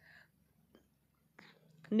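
A pause in a woman's spoken lecture: a soft breathy whisper-like sound at the start, then near silence, then a faint intake of breath before her speech resumes right at the end.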